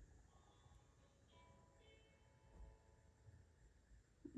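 Near silence: room tone, with a few faint, steady musical tones held briefly about a second in.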